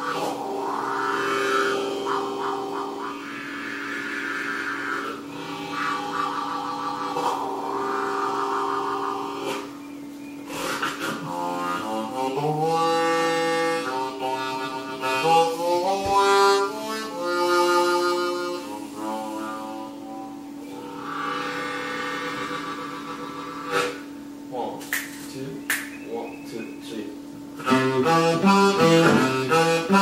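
Blues harmonica played in slow, free-time wailing phrases with bent notes over a held low note. Near the end the playing breaks into a fast, even boogie rhythm, with the acoustic guitar joining in.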